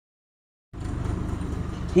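Dead silence from a cut in the recording, then, less than a second in, a steady low rumbling background noise that runs until a man's voice starts again at the very end.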